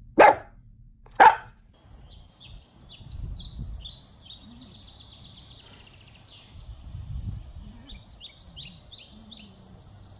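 A dachshund barks twice, about a second apart. Then birds sing in quick, high, repeated chirping phrases over faint outdoor background noise.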